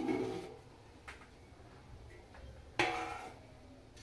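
Metal lid lifted off a metal cooking pot of dum biryani: a short metallic scrape as it comes away, a faint click about a second in, and a sudden clank that rings briefly near three seconds in.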